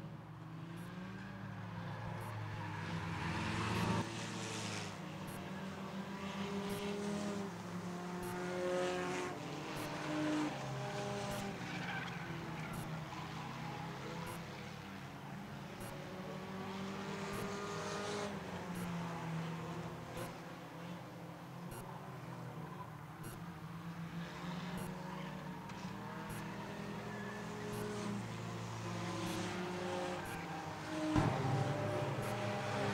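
Several enduro race cars' engines running laps on a short oval, swelling and fading and gliding up and down in pitch as the cars go by.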